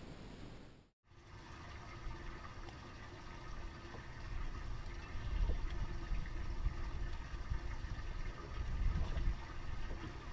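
Wind rumbling and gusting on the camera microphone of an open boat, with water lapping at the hull and a faint steady hum underneath. The sound cuts out briefly about a second in, then the gusts swell louder toward the middle and near the end.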